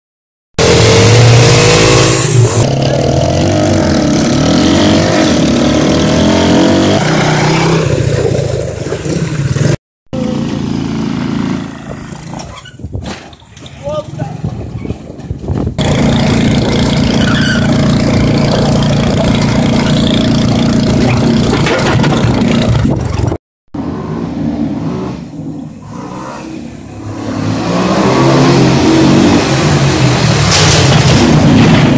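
Small engines of a quad and pitbikes running and revving, in several cut-together clips: the sound breaks off abruptly near ten seconds and again about three-quarters of the way through. In the middle stretch the engine runs at a steady drone while riding.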